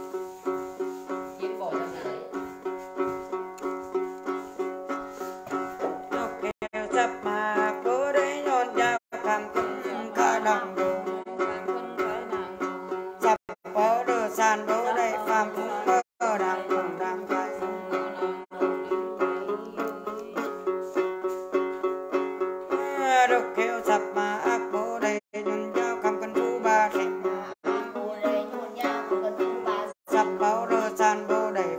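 Đàn tính, the long-necked gourd lute of Tày-Nùng Then rites, plucked in a steady repeating rhythm of two to three notes a second. From about seven seconds in, a voice sings a wavering Then chant over it.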